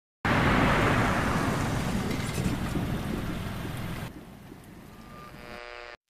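Rain-and-thunder-like noise opening a sped-up song, loud at first and fading over about four seconds. Near the end a faint sustained chord swells in, then cuts off briefly before the music starts.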